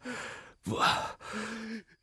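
An ailing old man's weak, breathy voice: gasping breaths and a sigh broken by a single halting word, in three short strained stretches with pauses between.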